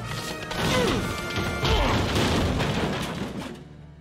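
Film soundtrack of an animated fight: dramatic score under crashes and hits, which drops away sharply about three and a half seconds in.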